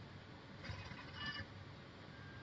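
Faint, brief mechanical whir from the video teller machine's internal card-issuing unit as it prepares a new bank card. It starts about half a second in and stops after under a second.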